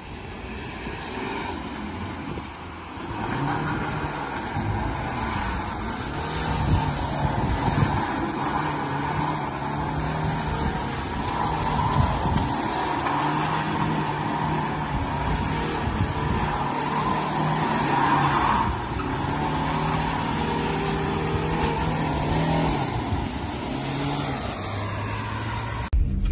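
BMW 330i (G20) turbocharged 2.0-litre four-cylinder engine revving hard while the car drifts. The revs climb about three seconds in and are held high through the slide.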